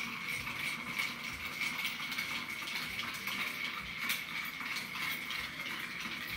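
Ice cubes clinking and rattling against the inside of a glass mixing glass as a bar spoon stirs them round, a steady stream of small clicks. A faint steady high whine sits underneath.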